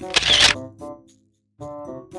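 A camera shutter sound effect: one short, sharp burst right at the start. Background music comes in after a brief silence.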